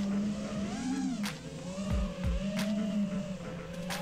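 FPV quadcopter's brushless motors and Gemfan Hurricane 51433 three-blade props whining, the pitch wavering up and down as the throttle is worked, with a few brief ticks.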